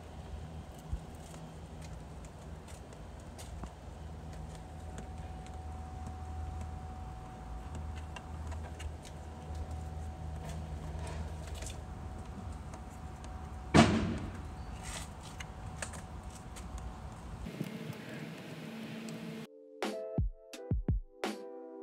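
Light clicks and handling noises as beaded weather stripping is pressed along the edge of an RV door's window frame, over a steady low outdoor rumble. One sharp knock comes a little past the middle, and background music starts near the end.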